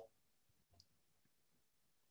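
Near silence, with one faint tick a little under a second in.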